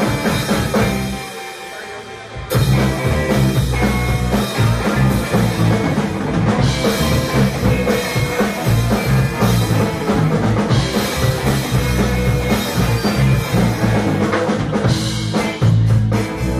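Live rock band playing electric guitar, bass guitar and drum kit. About a second in the band drops to a brief quieter break, then comes back in sharply at full volume a second and a half later, with the drums and bass prominent.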